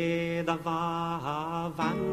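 Music: a voice singing long held notes over acoustic guitar.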